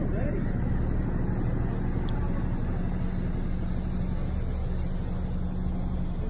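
Steady low rumble with a constant hum aboard the cruise ship Navigator of the Seas as she steams out to sea.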